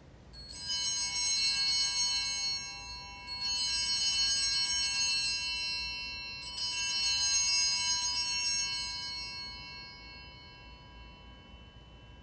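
Altar bells (a cluster of small sanctus bells) shaken three times, each peal ringing for a couple of seconds, the last dying away slowly. They mark the elevation of the consecrated chalice.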